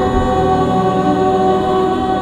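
Church choir of young women's voices singing together, holding long sustained notes in chord.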